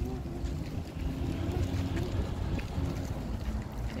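Wind buffeting the phone's microphone: a continuous, uneven low rumble, with faint voices underneath.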